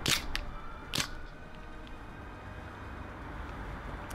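WE G17 gas blowback airsoft pistol firing two shots about a second apart, with a lighter click between them, then no more shots. It runs on propane chilled to about 1 °C, and in that cold the gas is too weak to cycle the slide fully, so the slide catches midway and the pistol stops firing.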